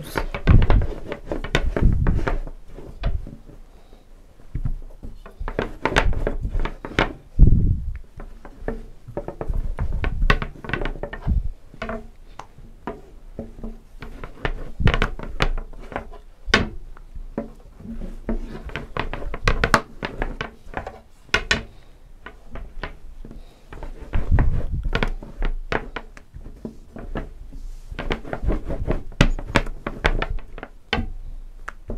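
Long thin wooden rolling pin rolling out a thin sheet of dough on a hard countertop: a low rolling rumble broken by irregular thunks and knocks as the pin is pushed, lifted and set down again.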